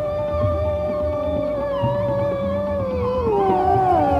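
Male Hindustani classical vocalist holding one long note in raag Kaushik Dhwani, then sliding down in pitch in a slow glide (meend) from about two and a half seconds in. Underneath are a tanpura drone and light tabla strokes.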